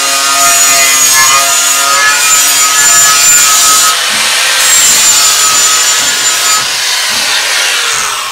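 Small angle grinder running a 120-grit Monolith flexible polishing pad along a tile's cut edge: a steady high whine over gritty grinding, with a brief lighter patch about four seconds in. The pad is buffing out small chips left by the cut.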